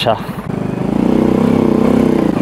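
Small step-through motorcycle's engine running as it is ridden slowly, growing louder about half a second in as the engine note rises a little.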